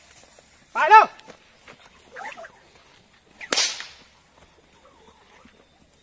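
A horse-training whip cracks once, sharply, about three and a half seconds in, used to drive the horses on. About a second in comes a short, loud call, the loudest sound here, with a fainter one a second later.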